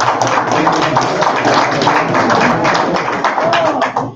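Audience applauding, a dense run of claps with a little laughter and talk mixed in, stopping abruptly right at the end.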